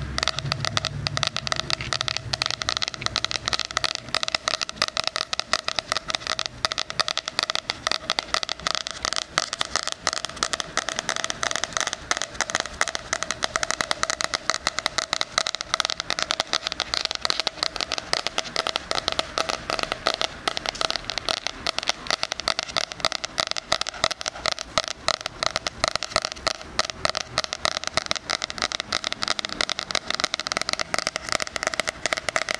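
Fingers tapping and scratching rapidly on the hard cover of a spiral-bound planner, right up against a binaural microphone: a continuous, dense patter of many small clicks a second, steady throughout.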